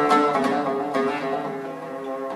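Solo oud improvisation: a run of single plucked notes that ring and fade, the playing thinning out and growing quieter in the second half.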